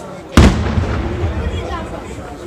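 Aerial shell from a daytime fireworks display bursting once with a sharp, loud bang about half a second in, trailing off quickly.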